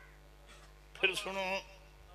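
A single short, harsh call, about half a second long, a second into an otherwise quiet stretch.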